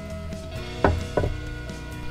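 Two sharp wooden knocks about a third of a second apart, a little under a second in, as a wooden cutting board is handled and lifted out of a laser engraver's frame, over steady background music.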